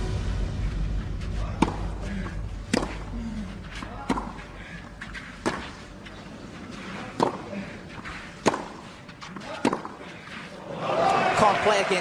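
Tennis rally on a clay court: seven racquet hits on the ball, about one every second and a half, over a murmuring crowd. A crowd cheer swells up near the end as the point is won.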